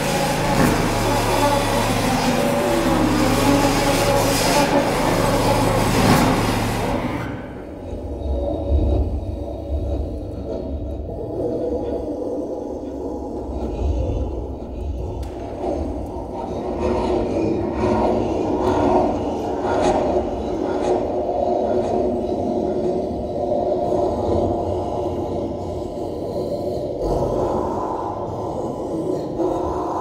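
A contemporary chamber ensemble of flutes, lupophon, contrabass and bass clarinet, contraforte, harp, piano, violin and cello, amplified through a sound system, playing noise-based extended techniques. A dense, hissing texture cuts off abruptly about seven seconds in. Low rumbling, scraping and rubbing sounds follow, with sustained middle-register tones.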